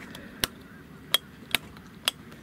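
Plastic dock-light rocker switch on a Sea-Doo Switch dash clicking as it is pressed, with three sharp clicks spaced under a second apart and a fourth right at the end.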